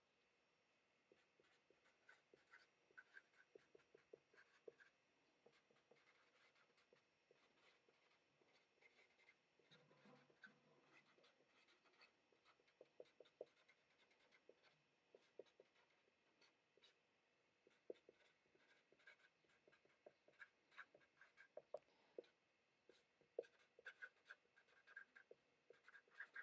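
Faint scratching and squeaking of a felt-tip Sharpie marker writing on paper, in short uneven strokes with brief pauses between words.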